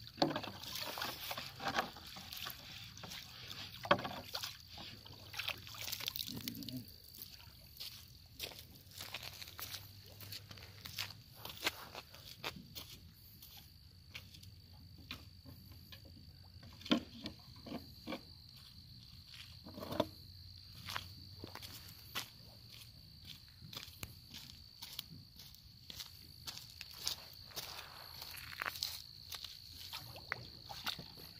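Light water sloshing with scattered small knocks and clicks, as of people moving about in a small boat, over a faint steady high-pitched whine.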